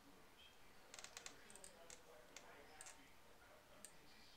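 Near silence: faint room tone with a scattering of small, sharp clicks from about one second in until near the end.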